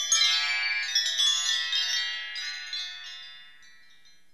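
A shimmering cascade of high wind-chime notes, struck in quick succession, ringing on and dying away to nothing over about three and a half seconds, as the closing flourish of a TV programme's opening jingle.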